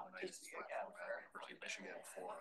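Only quiet, indistinct conversation: several people talking softly among themselves in a room.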